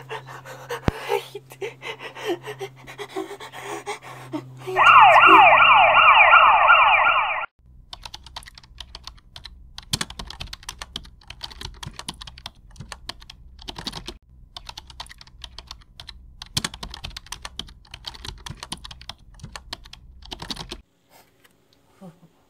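Computer keyboard typing: a long run of rapid key clicks from about eight seconds in until shortly before the end. Before it, about five seconds in, a loud siren wails for about two and a half seconds in quickly repeating falling sweeps.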